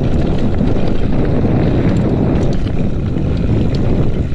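Downhill mountain bike rolling fast over a dirt trail, heard through a bike-borne camera: a loud steady low rumble of wind on the microphone and tyres on dirt, with scattered small clicks and rattles from gravel and the bike.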